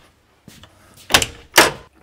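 Cab door of a Bobcat E35 mini excavator being unlatched and swung open, with two sharp clunks about half a second apart, a little past the middle.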